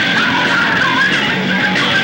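Loud, distorted punk rock, with a vocalist shouting into a microphone over a noisy, dense band sound.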